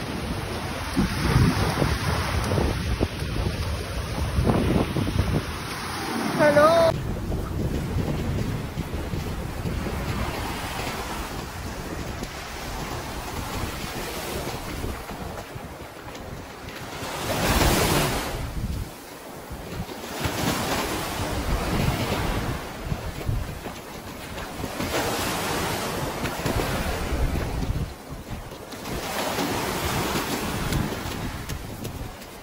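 Sea waves washing on a beach, swelling and easing in irregular surges, the biggest a little past halfway, with wind buffeting the microphone.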